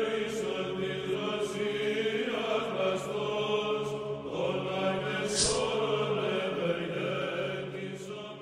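Chanted choral music with long held chords that change every couple of seconds, beginning to fade near the end. There is a short hiss about five seconds in.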